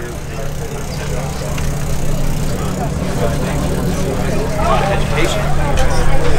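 A steady low mechanical hum, like a running motor, under faint chatter from distant voices.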